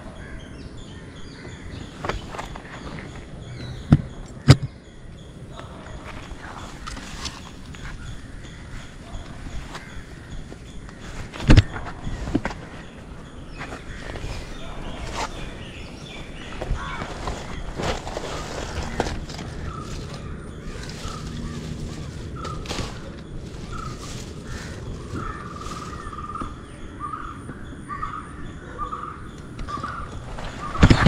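Outdoor ambience with birds calling, including a run of short repeated calls in the last third. A few sharp knocks stand out, the loudest about four and eleven seconds in.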